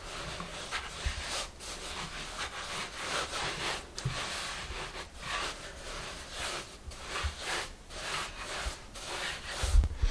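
Floured hands rolling soft bread dough back and forth on a wooden board, shaping it into a long log. The result is a run of soft rubbing, swishing strokes, about two a second.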